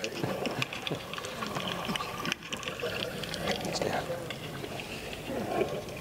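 Soundtrack of underwater reef footage heard over a room's speakers: continuous crackling and bubbling water.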